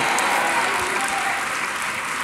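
Congregation applauding in a large hall, the clapping slowly dying down.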